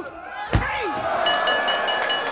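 A single heavy slap on the wrestling ring's canvas mat about half a second in, the final count of a pin, followed near the end by a bell rung rapidly, about five strikes a second. Shouting voices run underneath.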